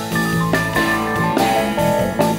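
Live rock band playing an instrumental jam: electric guitar lines over bass, drums and keyboards, in a direct soundboard mix.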